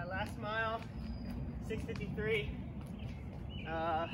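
A person's voice: three short, wavering vocal sounds without clear words, over a steady low outdoor background rumble.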